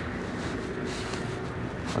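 Iveco HGV's diesel engine idling, heard inside the cab as a steady low rumble, with the dash showing what the driver takes for a DPF regeneration.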